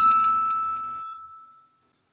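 A natural harmonic plucked on an acoustic guitar: one high, pure note struck at the start, ringing and fading away over almost two seconds.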